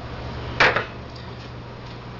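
A brief clatter of kitchen things being handled on a wooden cutting board, about half a second in, then a few faint taps over a steady low hum.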